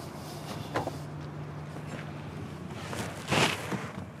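A person climbing into a car's driver's seat, with a brief rustling shuffle a little past three seconds in. A low steady hum underneath stops about two-thirds of the way through.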